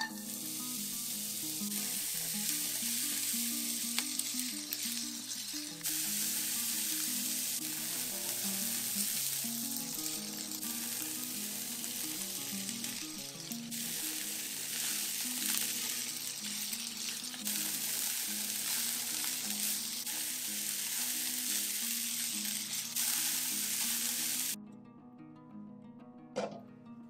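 Diced onion and sliced leek sizzling in hot olive oil in a frying pan, stirred now and then with a spatula. The hiss starts as the onion drops into the oil and cuts off suddenly near the end.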